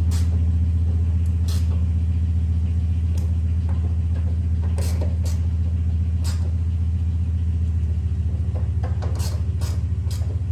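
A steady low machine hum runs unbroken, with a few short sharp clicks and knocks from hand work on the car's door fittings at scattered moments.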